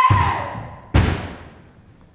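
Two heavy thuds about a second apart on a stage, the second a sharper bang, each trailing off with a short ring-out.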